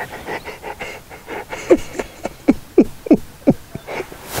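A man laughing in breathy, panting bursts: a run of short "ha" sounds, each falling in pitch, coming thickest in the second half.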